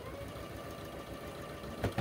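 Sewing machine running steadily, stitching a seam as quilt blocks are sewn together, with one short knock near the end.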